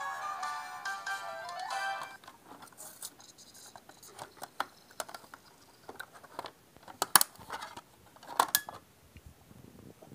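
DVD menu music playing from the TV, cut off abruptly about two seconds in. It is followed by scattered clicks and clatter from handling a DVD player as its tray opens, loudest twice near the end.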